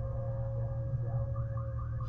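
Boat outboard motor idling with a steady low hum and a faint steady tone above it. About a second and a half in, background music with quick repeating chirp-like notes comes in.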